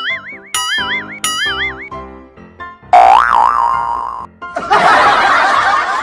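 Cartoon 'boing' sound effects over light background music: three short wobbling boings in quick succession, then a longer wobbling one. About four and a half seconds in, a dense, noisy wash of sound takes over.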